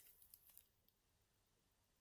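Near silence: room tone, with a few faint clicks in the first half second.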